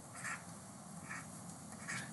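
Three faint, short squeaks of a stylus drawing small circles on a pen tablet, over low room hiss.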